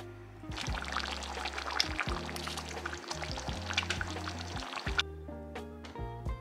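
Thick beef curry simmering in a pot, bubbling with many small pops and crackles. The bubbling starts about half a second in and cuts off at about five seconds, over background music.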